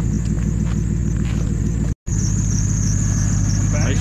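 Ram pickup truck engine idling steadily with an even, low pulse. The sound cuts out for an instant about halfway.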